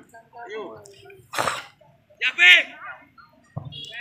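Spectators shouting short calls at a football match: a sharp breathy burst about a third of the way in, then a loud high-pitched yell past the middle.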